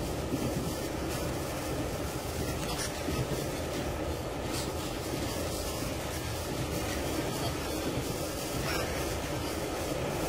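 Train carriage running along the rails: a steady rumble with a few faint clicks.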